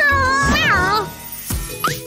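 A cartoon kitten's voiced meow, a pitched call that bends up and down for about a second, over children's background music with a pulsing beat. Near the end a short rising glide sounds.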